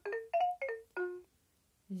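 Fisher-Price plush learning puppy toy playing a short electronic jingle of quick, bright, bell-like notes, about four a second, that ends about a second in.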